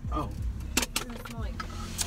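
Car's electric window motor running as a window is lowered a little, over a steady low in-car hum, with a few sharp clicks about a second in.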